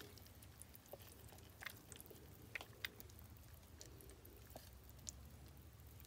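Near silence, with a few faint, soft wet clicks as thick banana bread batter slides out of a plastic container into a silicone loaf pan.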